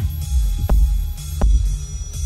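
Ambient techno track at 125 beats per minute: a deep, heavy bass beat thumping about twice a second under a low hum, with a thin, steady high tone above.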